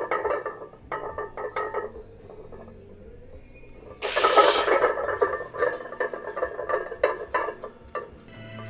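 Iron weight plates clinking and rattling on a loaded barbell during a set of back squats, in quick clusters of metallic clicks. About four seconds in there is a loud, rushing burst lasting under a second, followed by more rapid clinking.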